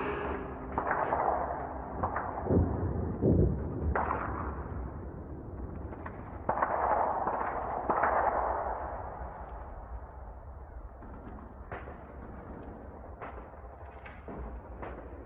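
Distant blasts in a ragged series: about seven heavy reports, each trailing off in a rolling echo, then sparser, fainter sharp cracks.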